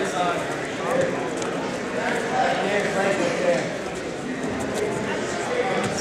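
Indistinct chatter of spectators in a gymnasium, with short knocks and scuffs of wrestling shoes on the mat.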